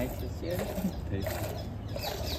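Water buffalo being hand-milked: streams of milk squirt in alternating strokes into a steel pail that is partly full of frothy milk.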